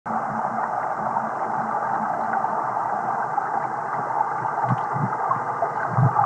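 Water heard through a submerged waterproof camera: a steady, muffled rushing of moving water, with two low thuds near the end.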